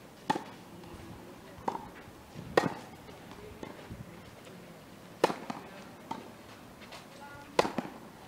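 Tennis ball struck by rackets in a baseline rally: four loud, sharp pops a little over two seconds apart, with fainter pops and ball bounces in between.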